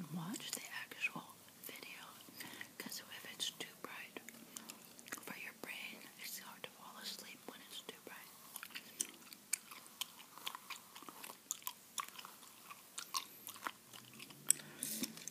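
Bubble gum chewed close to the microphone: an irregular run of sharp mouth clicks and smacks, several a second, with soft mouth noises between them.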